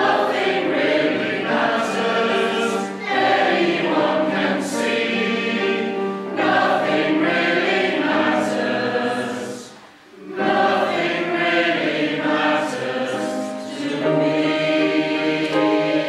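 Mixed-voice choir of men and women singing, accompanied by piano. The sound breaks off briefly about ten seconds in, then the next phrase begins.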